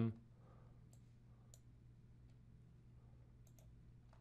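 A few faint, sharp computer mouse clicks, spaced irregularly, over a steady low hum.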